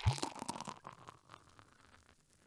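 A carbonated drink being poured into a glass: a glug at the start, then a crackling fizz of small pops that fades out over the next two seconds.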